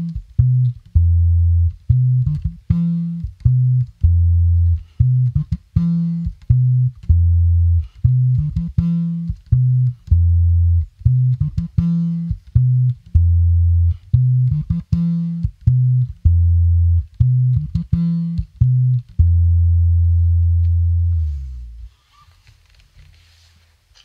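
Early-1960s Gibson EB-0 electric bass played fingerstyle: a repeating low bass line of short, plucked notes with little sustain and a strong fundamental bottom end. Near the end it settles on one held note that dies away, leaving a couple of seconds of quiet.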